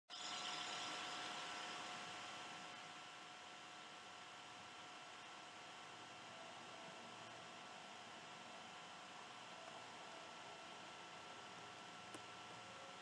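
Faint steady hiss with two thin steady tones running through it, a little louder over the first two seconds before settling.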